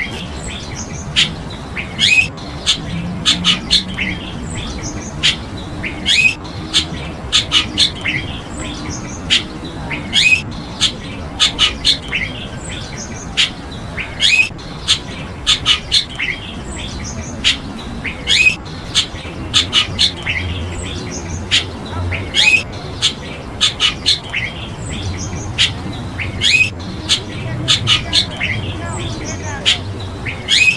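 Birds giving short, sharp calls over and over, often two or three in quick succession, above a steady low background rumble.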